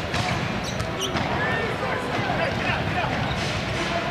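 Basketball being dribbled on a hardwood court, with a few sharp bounces over a steady murmur from the arena crowd.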